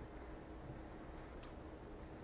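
Quiet room tone with a faint steady hum and a couple of very faint light clicks near the middle.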